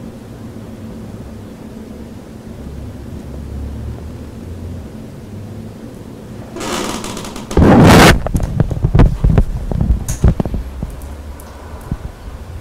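Low steady room hum, then about six and a half seconds in a burst of rustling close to the microphone and a very loud thump that overloads it, followed by a run of sharp knocks and rubs for a few seconds: handling noise on the microphone.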